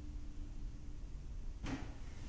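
The last lingering note of a Wurlitzer theatre organ fading away in the room during the first second. About a second and a half in comes a brief noise.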